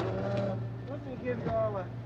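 Indistinct talk among several men, over a steady low hum.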